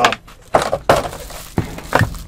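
Packaging of a boxed gaming headset being handled and opened: cardboard and plastic rustling with several sharp crackles.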